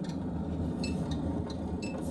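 Steady engine and road rumble inside a moving vehicle's cabin, with a few short, unevenly spaced ticks in the second second.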